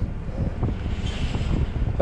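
Car running, heard from inside the cabin as a steady low rumble, with some wind-like noise on the microphone.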